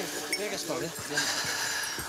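Hunting hounds yelping and whining, with a metallic jingling about halfway through.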